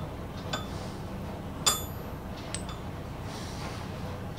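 Small loose metal parts, a nut and threaded fittings from a saw handle, clinking as they are set down on a steel block. One ringing clink comes a little before halfway, with lighter taps about half a second in and after it, over a low steady hum.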